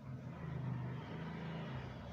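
A low, steady motor hum whose pitch wavers slightly, like an engine running.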